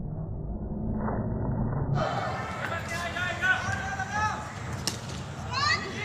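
Players and onlookers calling out and shouting during a cricket game, after a muffled low rumble in the first two seconds. A single sharp knock comes about five seconds in.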